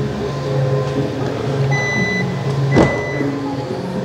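Hyundai Palisade's power tailgate being opened: two short high electronic warning beeps about a second apart, with a latch clunk as the second beep starts.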